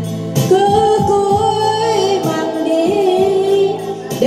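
A woman singing a Vietnamese song live into a microphone, holding long notes, over electronic keyboard accompaniment.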